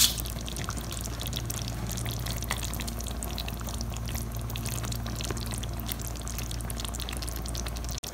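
Thick eggplant curry gravy simmering in a pan, bubbling and popping with many small crackles over a steady low hum.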